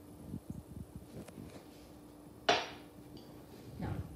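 Spice jars and a metal spoon being handled on a kitchen counter: a few faint taps and clicks, then one sharp knock with a short ring-out about two and a half seconds in, and another tap near the end.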